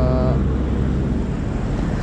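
Modified Suzuki Raider 150 Fi single-cylinder engine idling steadily through an open pipe, a low, even rumble.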